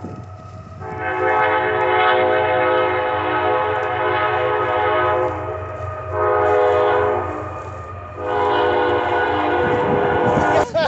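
Train horn blowing: a long blast of about four seconds, a short blast, then another long blast.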